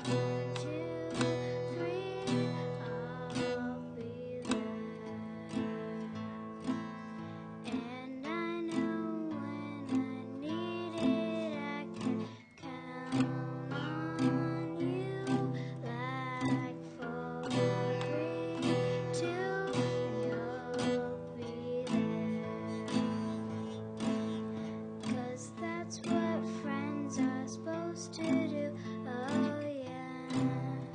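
Live acoustic guitar strummed in steady chords, with a voice singing a melody over it and a brief pause about twelve seconds in.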